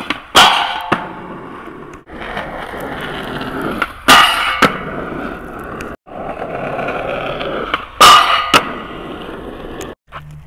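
Skateboard wheels rolling on asphalt, then the truck striking and grinding along a metal flat bar for about half a second and the board landing back on the street. This is a frontside smith grind, heard in three takes with hard cuts between them.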